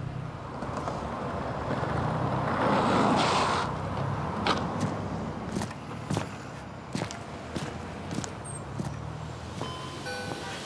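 A car passes, its road noise swelling to a peak about three seconds in and then fading. Then sneaker footsteps on a concrete sidewalk, a string of sharp, uneven steps.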